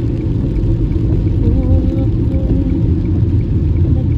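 Steady low rumble of a car's cabin while driving, with faint music with a melodic line playing underneath.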